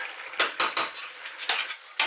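Metal ladle clinking and scraping against a stainless steel saucepan while stirring a simmering pork stew, with several sharp knocks in the first second and another about a second and a half in.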